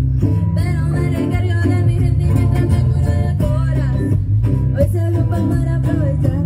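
A girl singing live through a microphone, accompanied by strummed acoustic guitar over a deep, steady bass line.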